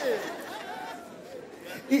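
Audience murmuring with light scattered laughter in a hall, loudest just after the start and fading.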